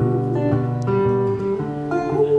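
Acoustic guitar played live, chords strummed and picked in an instrumental passage of a slow song. The chords change about every half second.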